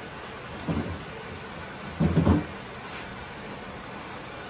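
Kitchen refrigerator being opened and shut: a soft knock under a second in, then a louder thump about two seconds in.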